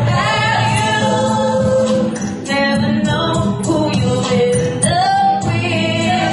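A woman singing live into a handheld microphone over musical accompaniment, holding long notes and sliding up into a higher held note about five seconds in.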